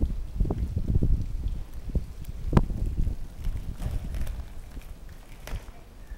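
Inline skate wheels rumbling over tarmac, with scattered clacks from the skates and one sharp clack about two and a half seconds in.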